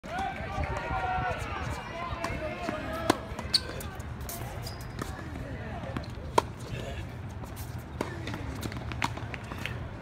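Tennis rally on a hard court: a tennis ball struck by rackets and bouncing, a string of sharp pops roughly every one to one and a half seconds. Voices are heard in the background in the first couple of seconds.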